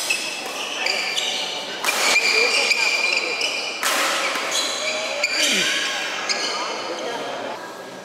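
Badminton doubles rally: sharp racket hits on the shuttlecock among short, high squeaks of shoes on the court floor, with voices in the hall.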